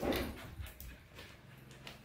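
A dog whimpering briefly at the start, then quieter, with only faint scattered sounds after.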